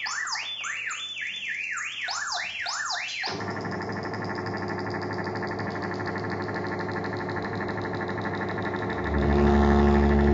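Hand-built analog synthesizer sounding rapid, repeated up-and-down pitch sweeps, which stop abruptly a little over three seconds in. They give way to a steady, dense drone of many held tones. Near the end a louder low hum swells in.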